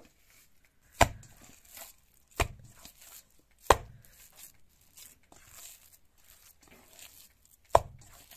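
Ground meat mixture being kneaded by hand in a stainless steel bowl: four sharp thuds as the meat is pressed and slapped down against the bowl, with soft squishing between them.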